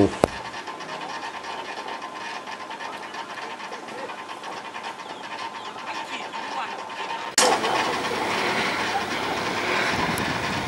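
Steady rushing, rumbling noise of a cable-guided descent from a high tower, with air rushing past and the descender running on its cables. About seven seconds in it abruptly gets louder and harsher.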